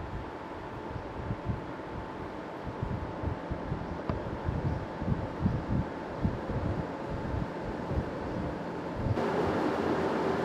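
Air buffeting the microphone in irregular low gusts over the steady hum of greenhouse ventilation fans. About nine seconds in, it changes abruptly to a louder, steadier whir.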